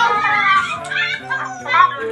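Children talking and calling out together over background music.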